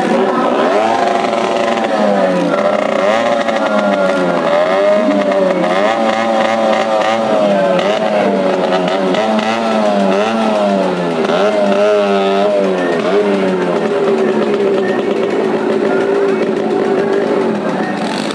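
A stunt vehicle's engine in a well-of-death arena, revving up and down over and over, then holding a steadier note near the end.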